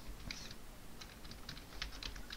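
Typing on a computer keyboard: a run of quick, irregularly spaced key clicks.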